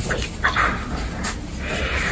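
Baby guinea pig giving a couple of short, high squeaks in the first second while held in the hands.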